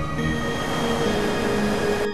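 Ambient music holding sustained tones over a steady rushing noise of heavy surf breaking.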